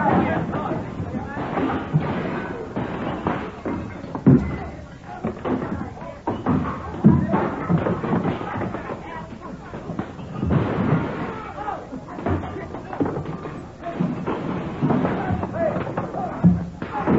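Radio-drama sound effects of a brawl: irregular heavy thuds and knocks of blows and bodies, mixed with voices.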